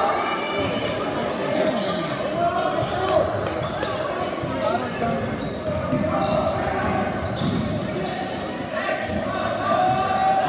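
A basketball bouncing on a gym's hardwood floor as it is dribbled, under steady chatter from the spectators, with the reverberation of a large gymnasium.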